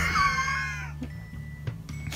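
A high-pitched vocal call held for about a second, dropping off at the end, followed by a few faint clicks over a low steady background hum.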